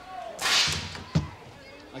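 A tennis ball cannon firing: a short, loud blast of air about half a second in, followed by a single sharp thud about a second later.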